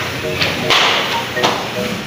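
Background music with a simple melody of short notes, under a few bursts of rustling and light knocking from handling.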